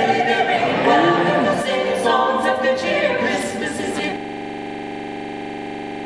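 A choir singing unaccompanied, with the word "Jesus" in the lyric. About four seconds in the singing breaks off into a steady, unchanging drone that holds to the end.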